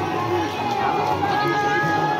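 Outdoor crowd at a busy fair: a steady din of people's voices, with one voice holding long notes.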